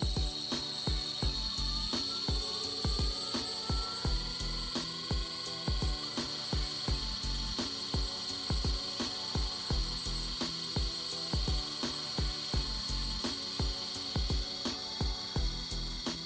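Small ABB electric motor run by an ABB ACS380 AC drive during its identification run: a steady high-pitched whine, with a fainter tone rising in pitch over the first several seconds as the motor speeds up. Background music with a steady beat plays throughout.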